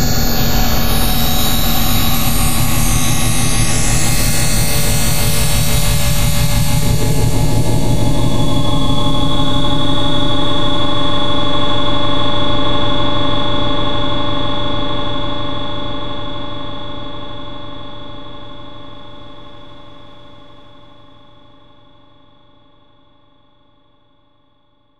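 Ending of an industrial techno track: a dense, sustained electronic drone of held synth tones, its high, hissing layer dropping away about seven seconds in, then fading out steadily over the last ten seconds.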